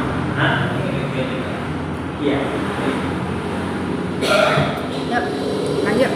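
Indistinct voices in short bursts over a steady low background hum, with no clear words.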